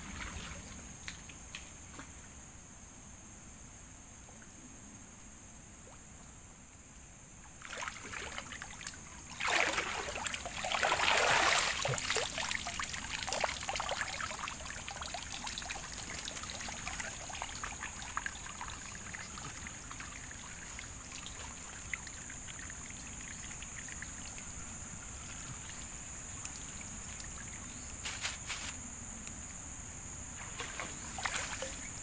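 Water sloshing and splashing as a person wades chest-deep in a muddy stream, hands working underwater at a small fishing net. The splashing is loudest for a few seconds about ten seconds in, with a steady high-pitched hum throughout.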